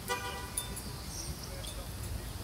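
A brief car horn toot right at the start, then a low, steady street background rumble.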